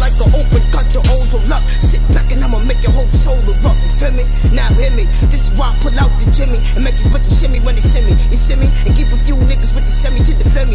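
Hip hop track with rapping over a heavy, booming bass beat of quick, repeated falling bass hits.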